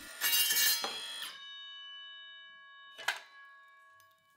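A cordless circular saw with a steel-cutting blade finishing a cut through steel flat bar, then the freshly cut steel ringing with several clear, steady tones that slowly fade. A single sharp clack about three seconds in.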